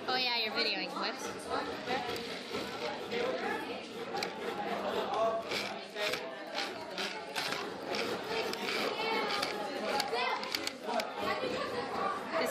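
Background chatter of many young voices talking at once, with no single voice clear, and a scatter of short knocks and clicks in the middle.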